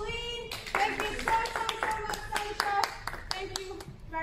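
A small group clapping quickly, about six claps a second for around three seconds, with a voice holding a long note over the claps.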